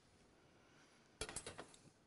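Metal plating tweezers clinking against a porcelain plate, a quick cluster of clicks just over a second in, as queen scallops are set down; otherwise near silence.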